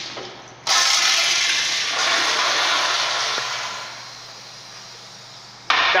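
Eljer Signature public-restroom toilet flushing: a sudden rush of water about a second in that tapers to a quieter steady flow after a few seconds. This is the fifth flush needed to clear the paper from the bowl, a sign of the toilet's weak flush.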